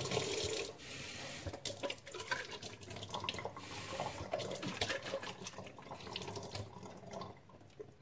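Kitchen tap running while a plastic Rhino Horn neti pot is rinsed under it: water splashing, with the clicks and knocks of the pot being handled at the sink.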